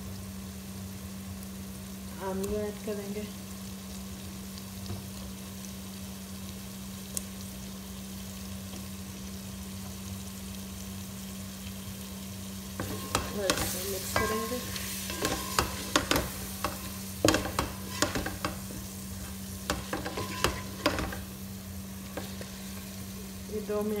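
Onion masala frying in a metal pot with a steady hiss and a low hum. From about halfway, a spoon stirs chunks of raw potato into it, clicking and scraping against the pot for several seconds.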